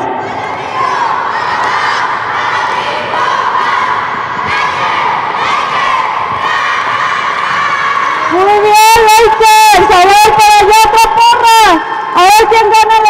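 A group of children shouting their team cheer together, mixed with crowd cheering. About eight seconds in, a woman's loud amplified voice comes in over the loudspeaker with long drawn-out calls.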